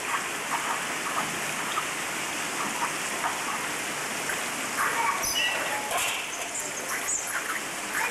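Water pouring steadily from a spout into a bath, a constant splashing hiss, with a few faint short sounds over it around the middle.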